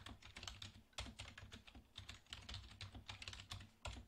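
Computer keyboard being typed on: a quiet, quick, irregular run of keystroke clicks.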